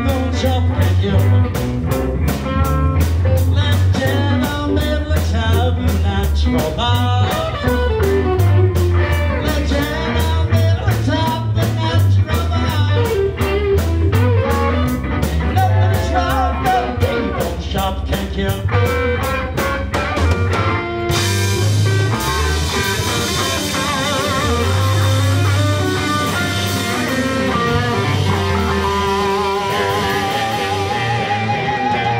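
Live blues band playing an instrumental passage: electric guitar lines with bent notes over bass guitar and drums keeping a steady beat. About two-thirds of the way through, the cymbals open up into a bright wash.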